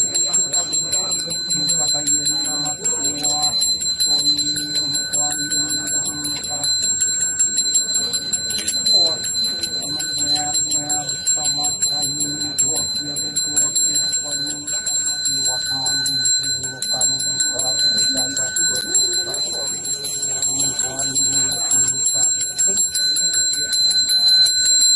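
Small brass hand bell, a Balinese priest's genta, rung without pause in a steady high ringing. Under it, a man chants prayers in long, low, held phrases.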